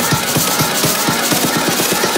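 Electronic dance music from a DJ mix: a busy, fast drum pattern with the deep bass thinned out.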